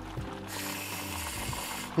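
AeroPress coffee maker being pressed, the brew pushed through the filter under pressure, with a steady hiss that starts suddenly about half a second in and lasts over a second, the sign that the plunger has reached the coffee grounds and is forcing air through them.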